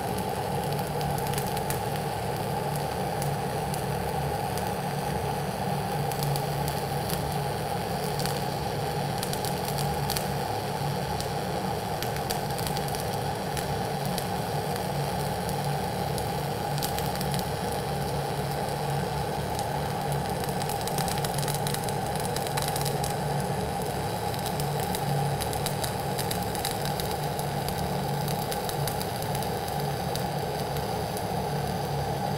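Dual-shield flux-cored welding arc on ESAB 7100 wire under C25 gas, burning without a break as a vertical bead is laid. It makes a steady crackle peppered with fine pops, with no pauses in the arc.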